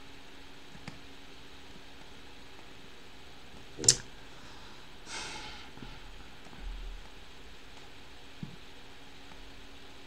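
Quiet small-room tone with a faint steady hum. One sharp click comes about four seconds in, and a brief breathy sniff follows a second later.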